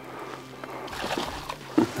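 A hooked bass splashing at the surface as it is reeled up to the boat, in a few short splashes in the second half, with a laugh right at the end.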